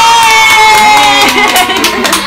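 A small group of young people cheering with a long drawn-out shout, one high voice holding a single note that slowly falls before breaking off near the end.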